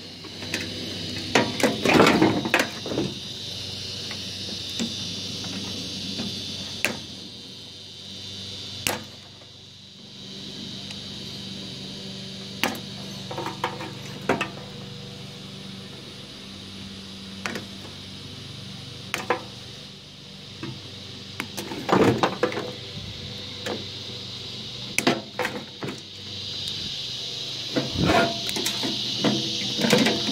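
Scattered clicks, knocks and clatter of side cutters and loose parts against a microwave's sheet-metal chassis as its wiring and components are pulled out, loudest in bursts about two seconds in and near the end. A steady high insect drone runs underneath.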